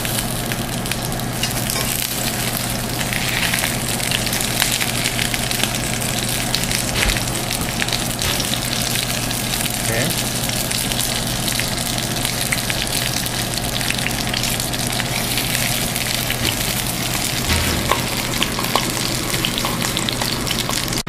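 Salmon fillets crusted with thin potato slices frying potato-side down in clarified butter in a stainless steel frying pan: a steady sizzle with dense, fine crackling, the potato scales browning.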